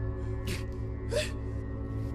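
Dramatic film score underscore with a steady low drone and held tones, with two short breathy gasps about half a second and a second in.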